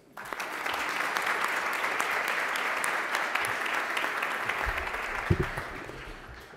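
Large audience applauding in welcome, steady for several seconds and dying away near the end.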